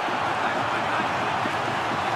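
Steady stadium ambience from a televised football match: an even wash of noise, with a few faint knocks.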